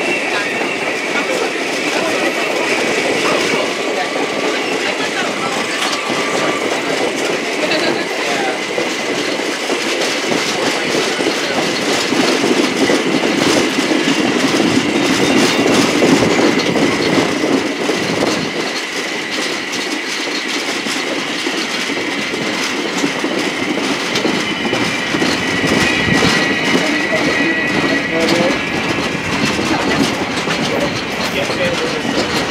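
Passenger railroad cars rolling along the track, heard close up from the train: the wheels click over the rail joints under a steady rolling rumble. A steady high squeal from the wheels on the curve runs under it, and the noise swells for a few seconds in the middle.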